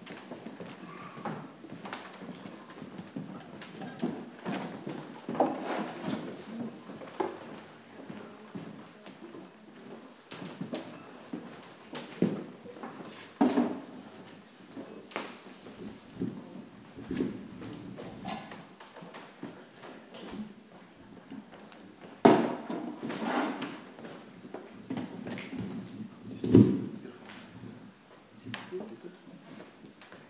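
Stage chairs and microphone stands being moved and set up: scattered knocks, bumps and clunks over low steady background noise, the loudest bangs about 22 and 26 seconds in.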